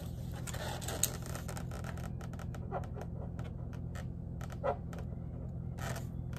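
A marker drawing on a latex balloon face while the balloons are handled: a string of faint, short scratchy clicks with a couple of brief rubbery squeaks.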